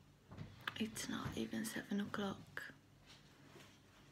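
A woman speaking softly, her words not made out, for about two seconds from half a second in, then a short pause.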